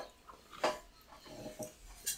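A dog whimpering faintly, a thin high whine just past the middle, with a short mouth click from eating before it.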